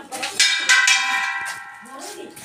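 Steel kitchen pots clanging as they are knocked: two strikes about a third of a second apart, then a ringing metallic tone that fades over about a second.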